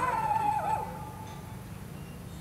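A dog giving one long, high whine of about a second and a half that sinks slightly in pitch before fading.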